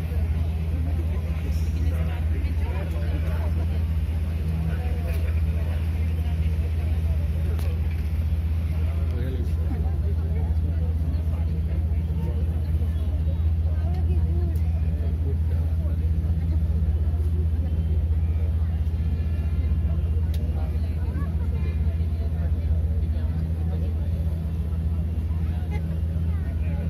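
Steady low drone of a boat engine, heard from aboard, running evenly throughout, with faint voices chattering over it.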